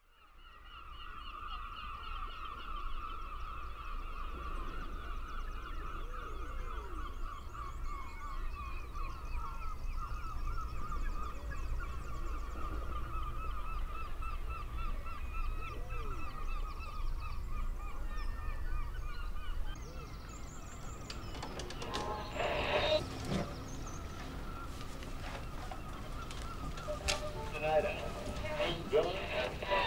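A large flock of birds calling continuously in a dense honking chorus that fades in at the start and thins out about two-thirds of the way through. Near the end come clicks and crackling as a small portable radio is handled.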